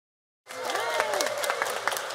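Audience applauding, many separate claps with a voice or two over them, starting abruptly about half a second in.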